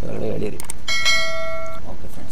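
A short click, then about a second in a bright bell ding that rings steadily for close to a second before cutting off: the notification-bell sound effect of a subscribe-button animation.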